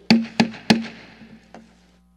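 Wooden gavel struck three times on the rostrum, sharp knocks about a third of a second apart with a short ringing tail, adjourning the session; a lighter knock follows about a second and a half in.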